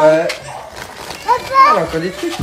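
Speech only: voices exclaiming and talking, a child's among them, with a quieter gap in the middle.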